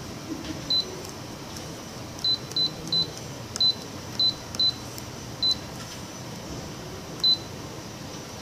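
Canon imageRUNNER ADVANCE C2220i touch-panel key-press beeps as on-screen keyboard keys are tapped with a stylus: nine short, high beeps at the same pitch, spaced irregularly with the typing, over a steady low hum.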